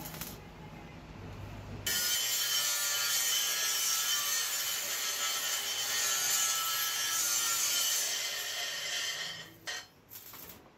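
Sparking metalwork on an iron pan: a loud, steady, harsh hiss that starts suddenly about two seconds in and fades away near the end.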